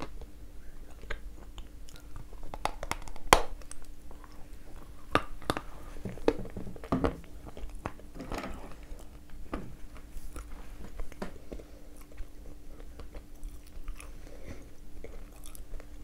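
Small bites of hard edible 'ryzhik' clay being crunched and chewed in the mouth: scattered sharp crunches, the loudest about three seconds in.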